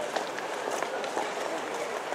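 Footsteps of a large crowd walking on an asphalt street, many short steps overlapping, with low chatter among the walkers.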